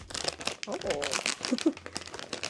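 Shiny blue metallic foil pouch crinkling as hands pull it open, a fast, continuous run of crackles.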